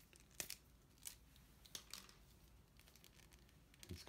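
Near silence with a few faint clicks and rustles from a cable being handled.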